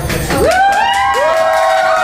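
Two voices sliding up into long, held, overlapping notes, like a group calling out or singing a sustained 'ooh'.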